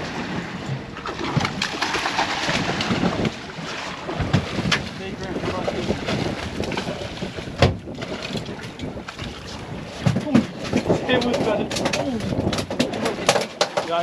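Wind and water noise on an open fishing boat while several anglers reel in fish, with clicks and knocks from rods and reels. A sharp knock comes about seven and a half seconds in, clicks come thick near the end, and indistinct voices are heard.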